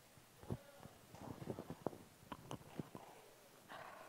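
Clip-on lapel microphone being handled and adjusted. There is a series of sharp clicks and knocks and fabric rustling against the mic, with a softer rustle near the end.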